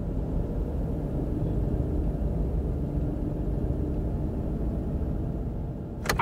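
A car engine idling, heard from inside the cabin as a steady low rumble.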